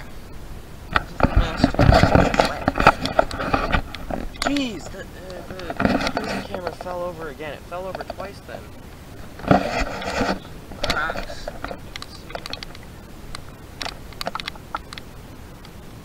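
A young man's voice in short unintelligible stretches, talking or humming, in three spells, with clicks and rustles from the handheld camera being knocked about.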